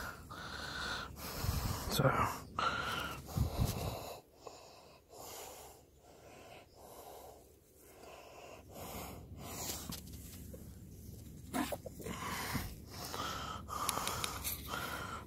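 A man's heavy breathing close to the microphone, a breath in or out about every second, fading for a few seconds in the middle before picking up again.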